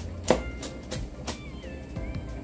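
Cleaver chopping ginger and galangal on a cutting board: about four sharp knocks, the first the loudest, over soft background music.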